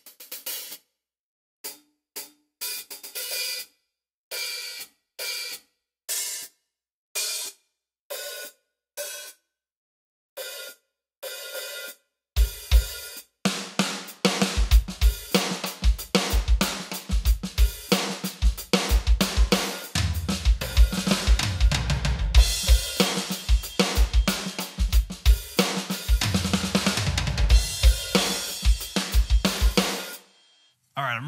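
Hi-hat sounds from a Roland TD-25 V-Drums module, struck one at a time with short silences between, as different hi-hat instruments are tried out. From about twelve seconds in, the electronic kit plays a full drum groove with kick, snare, hi-hat and cymbals.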